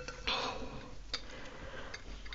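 Faint handling sounds from hands working at the vase arrangement: a short rustle about a quarter second in and a small click a little after a second.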